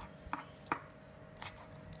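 Kitchen knife slicing green chillies on a white plastic cutting board: about five sharp, unevenly spaced taps of the blade striking the board.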